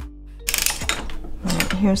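Circular sock machine clattering as it is worked: a dense run of metal needle clicks starts about half a second in, over soft background music that fades out.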